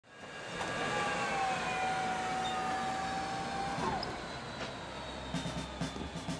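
Business jet's turbine engines whining, a stack of high tones sinking slowly in pitch as they wind down, over a low rumble.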